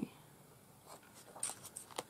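Faint rustling of loose printed paper sheets, old dictionary pages, being shuffled and set down, starting about halfway in after a quiet moment.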